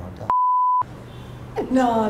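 Censor bleep: a single steady 1 kHz tone lasting about half a second, with all other sound cut out beneath it, masking a whispered remark.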